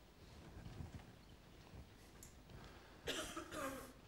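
Quiet room tone with a faint low rumble, then near the end a person's short cough in two quick parts.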